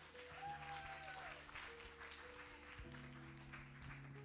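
Congregation clapping over soft background music with long held notes.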